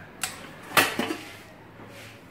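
Stainless steel pressure cooker lid being turned on the pot to unlock it: a light click, then a louder short metallic scrape a little under a second in, with a smaller knock just after.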